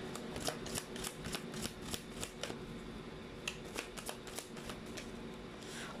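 A deck of cards shuffled by hand: a quick run of soft flicks and clicks that thins out after about two and a half seconds.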